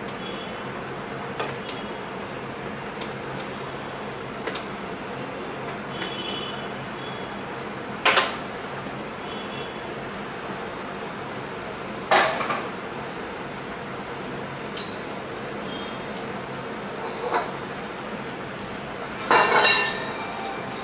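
Spinach blanching in water boiling in a frying pan on a gas stove: a steady bubbling hiss, broken by a few sharp knocks and clinks of kitchenware, loudest about eight and twelve seconds in, with a burst of clatter just before the end.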